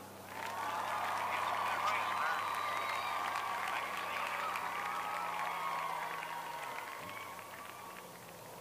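CB radio in a motorcycle helmet headset hissing with static over a weak, garbled incoming transmission; it opens just after the start and fades out near the end.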